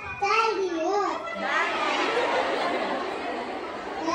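A young child's voice speaking into a microphone over a PA, then from about a second and a half in, the noise of a large audience rises and carries on.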